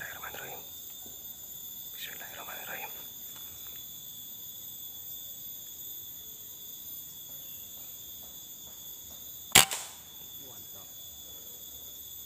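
A single shot from a scoped air rifle about two-thirds of the way through, sharp and short, taken at a squirrel in the trees. A steady high insect drone runs underneath.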